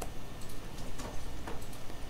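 Light ticks of a stylus tapping on a tablet screen while handwriting, a few clicks about half a second apart over a low steady room hum.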